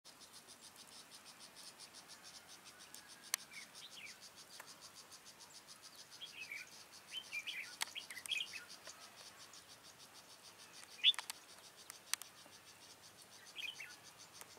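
Red-whiskered bulbuls giving short, bright call phrases in several bursts, over a steady high insect chirping that pulses about six times a second. A few sharp clicks cut in, the loudest about eleven seconds in alongside a bulbul call.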